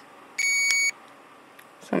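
A button click, then a single high electronic beep about half a second long from an automess gamma dose-rate meter as it is switched on.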